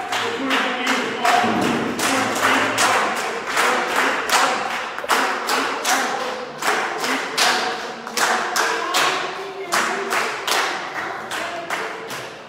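A crowd clapping together in a steady rhythm, about two to three claps a second, with voices singing along.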